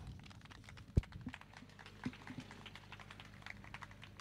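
Faint handling noise from a handheld microphone being lowered and moved about. There is a sharp low thump about a second in, a few lighter knocks, then scattered small clicks.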